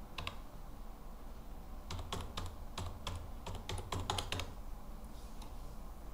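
Computer keyboard keys being typed, a couple of clicks at first, then a quick run of about a dozen keystrokes between two and four and a half seconds in, entering dates.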